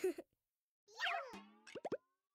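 Cartoon sound effects: a whistly tone sliding downward, then three quick rising plops in a row near the end, after the last of a short laugh.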